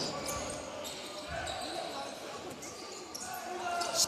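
Court sound of a live basketball game in a large hall: a basketball dribbled on the hardwood floor, with faint voices from the stands.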